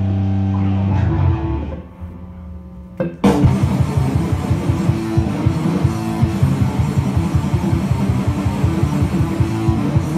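Electric guitar played live through an amplifier: a held low chord fades away over the first two seconds, then about three seconds in a loud, dense, fast-pulsing rhythmic passage starts abruptly.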